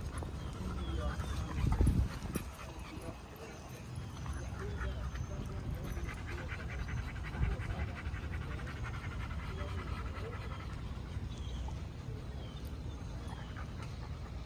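A Boxer dog panting over a low rumble of wind on the microphone, with a single loud thump about two seconds in.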